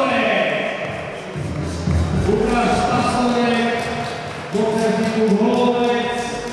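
A man's amplified voice in a large hall, drawing out long held syllables over music, as a ring announcer calls a fighter to the ring.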